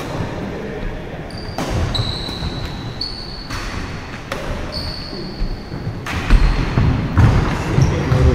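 Badminton doubles rally on a wooden indoor court: sharp racket strikes on the shuttlecock every second or two, short high squeaks of shoes on the floor, and dull footfalls.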